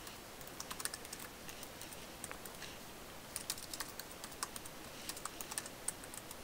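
Typing on a computer keyboard: short runs of keystrokes with pauses between them.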